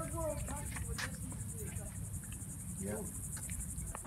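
Insects trilling in a high, steady, fast even pulse over a low rumble.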